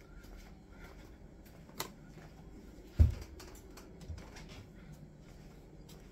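Faint clicking and rustling handling noises, with one sharp low thump about three seconds in and a softer one a second later.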